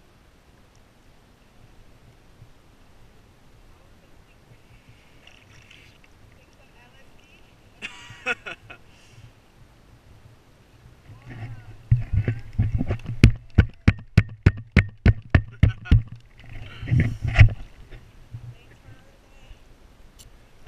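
Sea water lapping and slapping against a camera held right at the water's surface. It is quiet at first, with a short splash about eight seconds in, then a run of sharp, rapid slaps, about four a second, through the second half.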